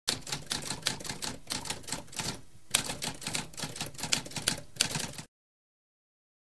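Typewriter keys clacking in a fast run of keystrokes, with a short pause about halfway, stopping abruptly a little over five seconds in.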